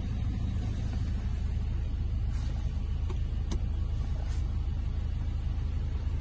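Ford Ranger 2.2 TDCi four-cylinder diesel engine idling steadily, heard from inside the cab as a low rumble, with a couple of faint clicks midway.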